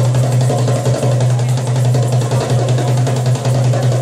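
Egyptian tabla (goblet drum) played live in fast, dense strokes, over music with a steady held low note.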